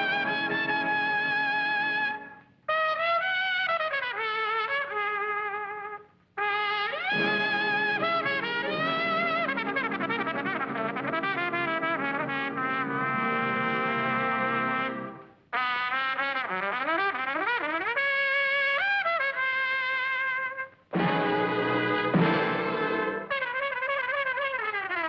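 Big-band swing with a solo trumpet leading over saxophones and brass, its notes bending and sliding. The music comes in phrases broken by four brief pauses.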